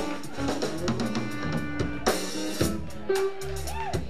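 Live band playing an instrumental jam: two electric guitars, electric bass and drum kit, with snare and bass-drum hits throughout. Near the end a note bends up and back down.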